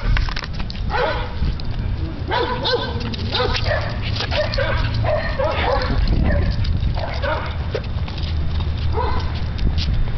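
Dogs barking in irregular bursts, several short barks at a time, over a steady low rumble.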